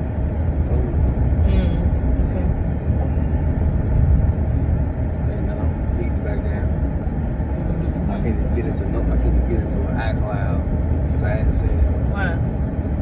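Steady low road and engine rumble inside a moving car's cabin, with faint talk from the occupants.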